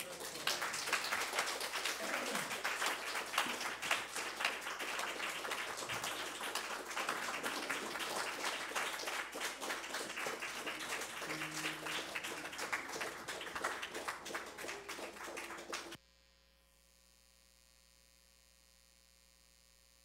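Audience applauding steadily, cutting off suddenly near the end and leaving only a faint steady hum.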